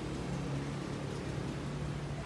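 A steady low hum over even background noise.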